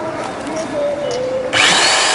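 Electric hand drill switched on about one and a half seconds in: its motor whine rises quickly, then runs steady at high speed.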